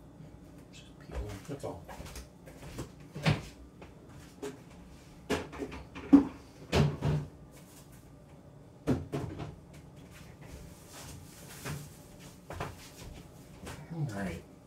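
Kitchen handling noises: an irregular series of knocks and clunks as things are moved and set down. The loudest come around six to seven seconds in.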